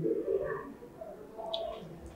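A dove cooing in low pitched notes.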